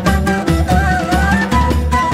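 Instrumental çiftetelli in makam segah: ney and oud carry a winding melody over contrabass and hand percussion keeping a steady dance beat.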